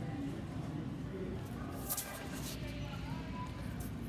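Big-box store background: a steady low hum with faint, indistinct voices, and a brief rustle of the phone being handled about two seconds in.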